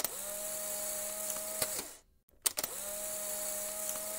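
A machine-like whirring sound effect, played twice the same way. Each time it starts with a click, slides up into a steady hum, holds for about a second and a half, then drops away, with a short silent gap between the two.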